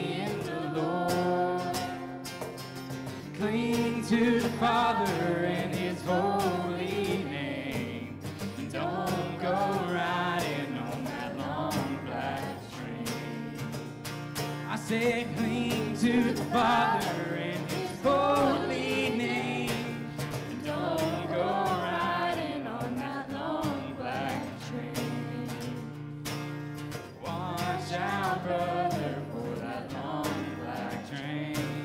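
A live worship song with a group of young voices singing together, backed by a strummed acoustic guitar and cajon hand percussion. The song is in a country-gospel style.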